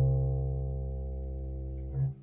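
Four-string electric bass guitar holding one plucked note at the third fret of the A string, fading slowly and damped just at the end.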